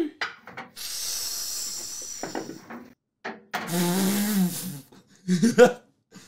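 Something being rubbed or scraped against a steel panel radiator: a rasping rub lasting about two seconds, then after a short gap a second, shorter rasping sound with a voice mixed into it.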